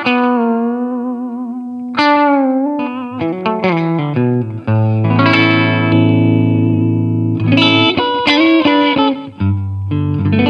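Deimel Firestar electric guitar played solo. It opens on a held note with a wavering vibrato, then moves through a quick run of notes into long ringing chords, with fresh chord attacks near the end.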